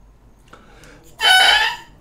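A Jones artist medium-soft oboe reed crowed on its own, without the oboe: one short, loud pitched squawk with a bright stack of overtones, starting about a second in and lasting about half a second. The reed is stiff and hard to sound, feeling hard rather than soft.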